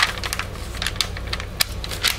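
Paper mold liner being handled and creased by hand: irregular light crackles and clicks of the paper, with one sharper click a little past the middle.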